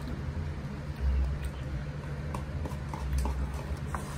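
Eating from paper noodle cups: a few faint, scattered clicks and taps of forks against the cups, with two dull low bumps, over a steady low hum.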